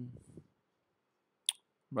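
A single sharp click about one and a half seconds in.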